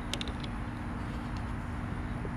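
A few faint clicks of a jump starter's battery clamp being fitted to the mower battery's positive terminal, over a steady low hum.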